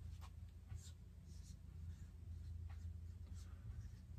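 Dry-erase marker writing on a whiteboard: a faint series of short, separate strokes as a word is written by hand.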